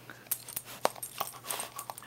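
A yellow Labrador close to the microphone mouthing a rubber chew toy: a string of short, sharp clicks and snaps, with a couple of brief, high whimpers.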